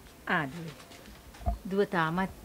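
A woman's wordless, emotional vocalizing: a short falling cry about a quarter of a second in, then a wavering, quavering voice near the end.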